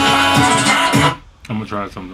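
A song playing back from a laptop, cut off suddenly about a second in; a moment later a man starts speaking.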